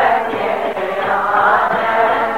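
Kirtan: voices chanting a devotional hymn together over steady musical accompaniment.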